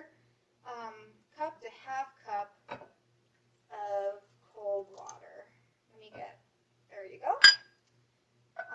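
Kitchenware against a glass mixing bowl: a short knock about three seconds in and a sharp clink, the loudest sound, near the end.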